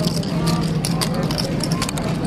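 Card-room background: a murmur of voices from nearby tables over a steady low hum, with scattered light clicks such as poker chips being handled.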